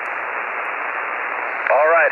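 HF transceiver's receiver hiss: steady band noise squeezed into the narrow single-sideband passband. A distant station's voice comes up through the static near the end.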